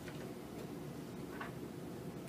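Quiet room tone: a steady low hum, with two faint, short rustles near the start and about a second and a half in.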